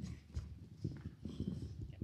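Footsteps of someone hurrying with a live handheld microphone, picked up through that microphone as irregular low thuds with handling noise.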